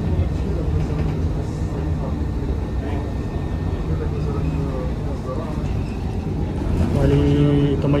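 Steady low rumble of a city bus's engine and road noise, heard from inside the passenger cabin while the bus moves through traffic. A man's voice comes in near the end.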